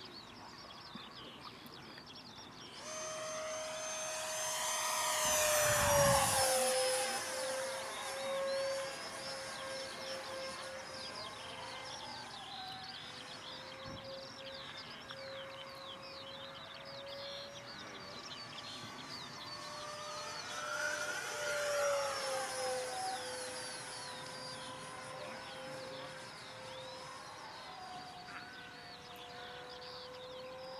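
Electric ducted-fan model jet flying, a steady fan whine with a high whistle above it. It comes in about three seconds in and grows loudest as the jet passes about six seconds in and again about twenty-two seconds in, its pitch dropping slightly after each pass.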